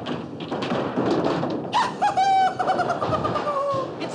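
A bowling ball rolling down a wooden lane with a rumble. About two seconds in, a long drawn-out cry rises over it and slides slowly down in pitch.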